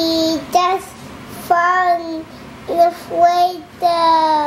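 A toddler girl singing to herself in a high voice without clear words: a string of short held notes, each sagging slightly in pitch, with brief gaps between them.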